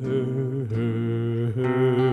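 A man singing long, drawn-out notes in a gentle folk ballad style over an acoustic guitar, changing note twice.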